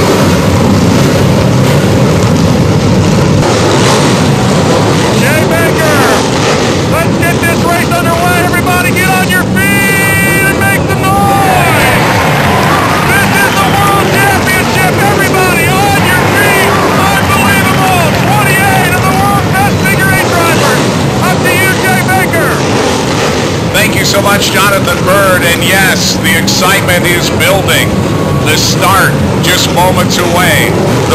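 Several race car engines running in a low, steady rumble, mixed with indistinct voices of a crowd or announcer.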